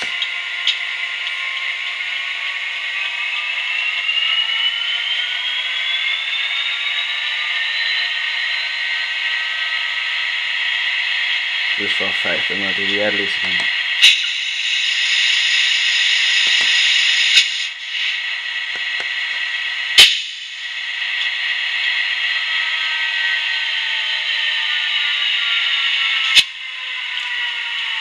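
Recorded Class 67 diesel locomotive engine sound played by a DCC sound decoder through a small speaker in an OO-gauge model, revving up over several seconds as the air-compressor function is run, holding, then winding back down near the end. Three sharp clicks and a few seconds of high hiss come around the middle.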